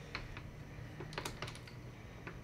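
Small plastic clicks and taps from fingers working the buttons and grip of a DJI Ronin 4D camera rig, a few irregular clicks, over a low steady hum.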